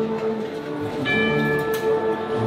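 Spanish Holy Week wind band playing a processional march, holding long, steady chords. A brighter, higher note comes in about halfway through.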